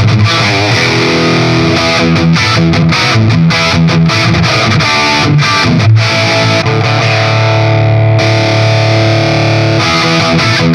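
Electric guitar through a Marshall 1959HW Super Lead plexi head cranked to 10, with both of its channels driven at once through an A/B/Y switcher for a fuller, heavily distorted lead-boost tone. Riffs and chords are played, then a chord is held and rings on through the second half.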